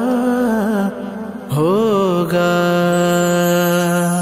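A man singing an Urdu manqabat, stretching out the end of a line. The note wavers, breaks off briefly about a second in, then slides up and settles into a long steady held note.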